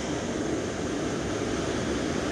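Waterfall and moving water giving a steady, even rushing noise.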